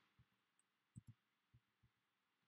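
Near silence broken by a few faint, soft keyboard keystrokes: about five light taps, two of them in quick succession about a second in.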